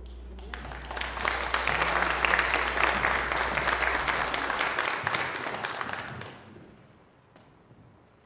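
A congregation clapping its hands after the choir's a cappella singing, starting about half a second in and dying away after about six seconds.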